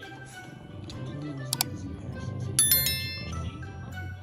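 Background music with a sharp click about one and a half seconds in, then a bright ringing ding a second later: the sound effects of an on-screen subscribe-button animation.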